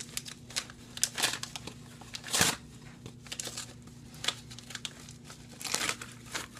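A mail package being opened by hand: irregular crinkling and rustling of its wrapping, with a louder rip about two and a half seconds in.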